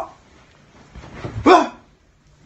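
A single short, sharp yelp about one and a half seconds in, with a pitch that jumps up, after a quieter lead-in.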